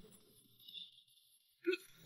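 Near silence for most of the stretch, broken near the end by one short vocal sound, a brief syllable or gasp.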